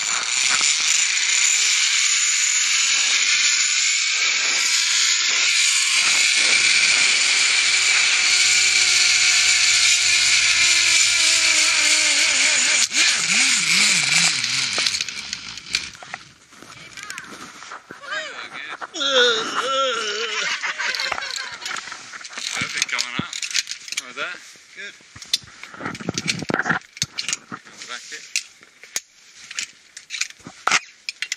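Zip line trolley pulleys running along the steel cable at speed: a loud steady whizz with a high whine, and lower tones that fall in pitch as the rider slows. About fifteen seconds in the whizz drops away, leaving scattered knocks and clicks as the ride ends.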